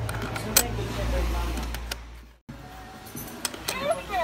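A coin clicks onto the plate of a novelty coin bank, over a low hum from handling and the phone's microphone. The sound cuts out about halfway through. Near the end there are a few quick high sliding voice-like calls.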